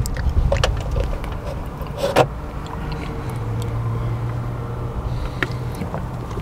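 Steady low car rumble heard inside the cabin, with a low even hum through the second half. A few light clicks and one sharp crackle about two seconds in come from a plastic drink bottle being picked up and handled.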